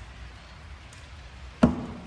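A single sharp knock about one and a half seconds in, with a brief low ring after it, over a faint steady background.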